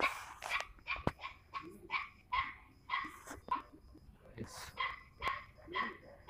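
A dog yapping repeatedly in the background, about three short yaps a second.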